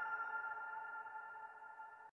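The fading tail of a chime-like intro jingle: a few steady ringing tones that die away slowly, then cut off suddenly at the very end.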